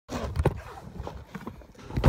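A few irregular knocks and rustles, the loudest about half a second in, ending in a heavier thump right at the end.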